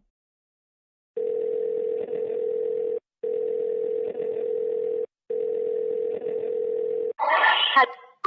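Telephone call tone through a mobile phone's speaker: one steady low tone that starts about a second in and sounds in three long stretches of about two seconds each, with short breaks between them.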